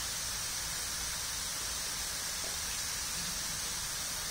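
Steady hiss of water from a dandelion hemisphere fountain nozzle, its many jets spraying out in a dome and falling back into the basin.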